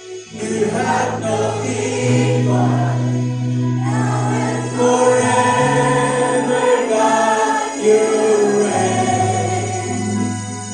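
Congregational worship singing with a live band of keyboard and electric guitar, slow and sustained over long held bass notes that change every second or two. The music swells back in after a short dip at the very start.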